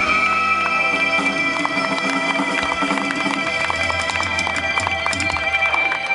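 A live Thai band playing through a PA, with a long high note held with a slight waver over quick percussion ticks.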